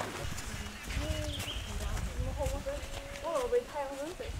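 People talking quietly in a group, over a low steady rumble.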